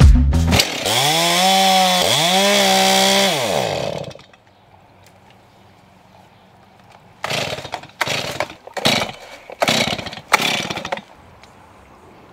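Chainsaw engine revving up, holding and dropping back twice in quick succession, then cutting off. After a pause comes a run of about five short, noisy bursts.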